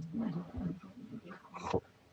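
A person's low, indistinct voice in short broken stretches, with a brief burst of noise near the end.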